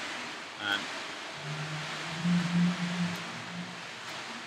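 A short 'um', then a person's low, hummed 'mmm' held for about two seconds, over a steady background hiss.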